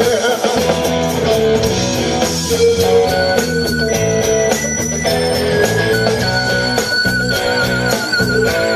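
Live rock band playing an instrumental passage: electric guitars, bass guitar and drums with a steady cymbal pulse. Long high lead notes are held over the chords, one wavering near the end.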